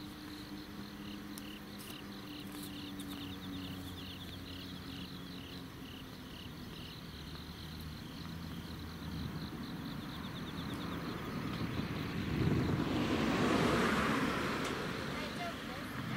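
Outdoor night sounds: an insect chirping at a steady two to three pulses a second over a low engine hum, then a vehicle passing that swells near the end and fades away.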